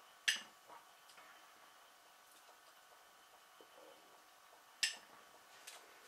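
Cutlery clinking against a plate during eating: two short, sharp clicks, one just after the start and one near the end, with a few faint ticks between.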